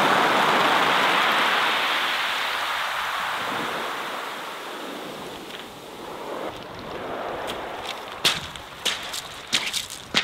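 A wave washing up a shingle beach and draining back, its rush fading over the first few seconds. Near the end come a few sharp crunches of footsteps on the pebbles.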